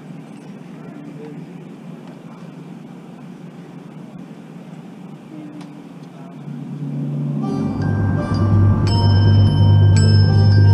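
Quiet stadium ambience, then about six and a half seconds in the drum corps front ensemble enters, swelling into sustained held chords of rolled mallet percussion over a deep bass.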